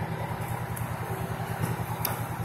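Diesel engines of parked fire trucks idling, a steady low pulsing rumble.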